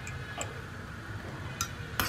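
A steel spoon clinking against a small pan of cashews frying in oil: a few sharp, separate clicks, the loudest about one and a half seconds in, over a low steady background.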